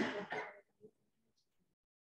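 A person clearing their throat once, briefly, at the very start.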